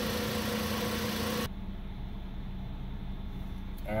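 Volkswagen Jetta engine idling steadily while it warms up, heard first from beneath the car, then after an abrupt cut about one and a half seconds in, duller and quieter from inside the cabin.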